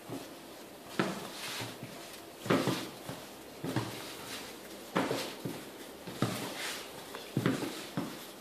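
Strands of yeast dough being lifted and laid down over one another on a cloth-covered table while plaiting, giving about six soft thuds roughly one every second or so, with hands rubbing on the dough in between.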